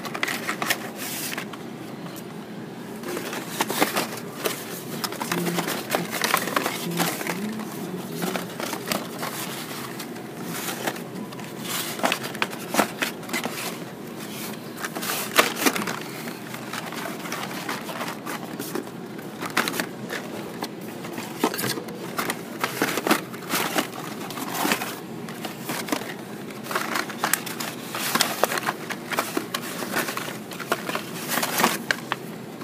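Blister-carded Hot Wheels cars being rummaged through in a cardboard shipper: plastic blisters and card backs clacking and rustling in quick, irregular clicks, over a steady low background hum.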